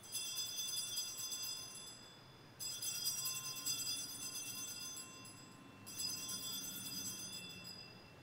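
Altar bells rung three times while the chalice is elevated at the consecration, each ring a shaken jingle of about two seconds, starting at the very beginning, a little over two and a half seconds in, and about six seconds in.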